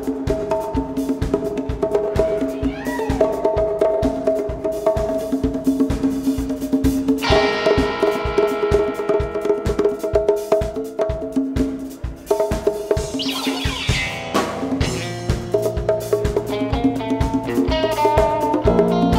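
A rock/jam band playing live on the soundboard mix: a drum kit keeps a steady beat under held notes. The music swells brightly about seven seconds in, and a low bass note comes in about two-thirds of the way through as the band builds.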